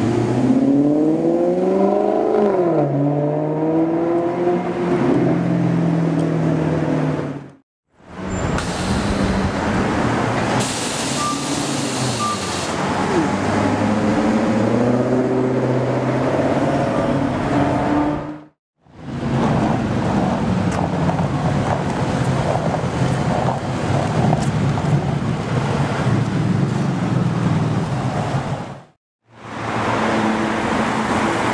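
A Maserati GranTurismo's V8 revving as the car pulls through an intersection, its pitch rising and then falling. After an abrupt cut, a Maserati GranTurismo convertible's V8 climbs in pitch as it accelerates away. After another cut comes steady street traffic noise.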